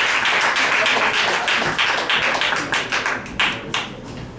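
Audience applauding, thinning out to a few scattered claps near the end.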